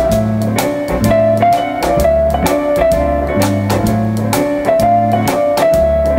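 Instrumental break of a 1963 beat-group single: a held lead melody line over walking electric bass notes, guitar and a drum kit keeping a steady beat about twice a second.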